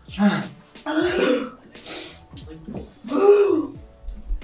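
Young people's pained wordless vocal sounds from the burn of a very hot wing sauce: groans, throat clearing and a sharp hissing breath, four separate bursts.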